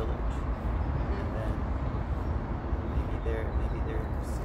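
A steady low rumble of outdoor background noise, with a few brief faint bits of voice.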